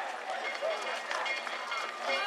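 Footsteps of a large group of festival rope-pullers moving along the street, with scattered voices and shouts among them.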